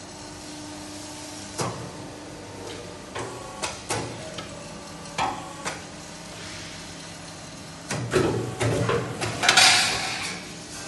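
A wall angle roll forming machine running with a steady hum. Scattered sharp knocks and clatter come throughout, and a louder burst of clattering and rough noise builds in the last two seconds.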